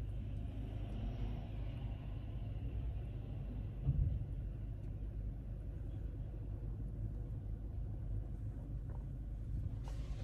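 Car cabin noise while driving: a steady low rumble of engine and road, with one brief thump about four seconds in.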